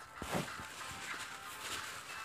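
Faint handling noise from a phone being moved: soft rustling over a low hiss, with a short knock about a third of a second in.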